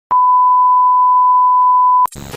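Electronic test-tone beep of the kind played over TV colour bars: one loud, steady, single-pitched beep held for about two seconds, opening with a click.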